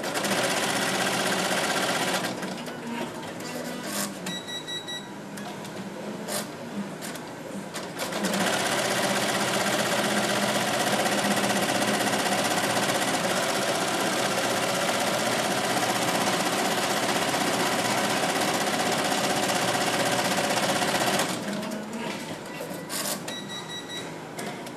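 Melco Amaya multi-needle embroidery machine stitching at speed, a fast, even chatter. It runs for about the first two seconds and again from about eight seconds in until near the end. Between the runs it is quieter, with uneven clicking and a short electronic beep twice.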